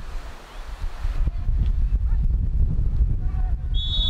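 Wind buffeting the microphone, with faint distant shouts from the pitch. Near the end a referee's whistle starts a steady, shrill blast.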